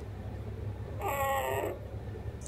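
A one-week-old puppy gives a single short, high, mewing whimper about a second in, over a steady low hum.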